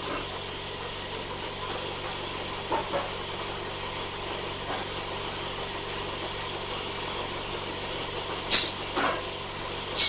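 Pneumatic can palletiser running with a steady hum, a few light knocks in between, and two short sharp hisses of compressed air venting from its valves and cylinders near the end.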